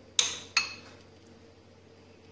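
Metal spoon clinking twice against a glass bowl, two sharp ringing knocks about a third of a second apart, while scooping out the vegetable-mayonnaise filling.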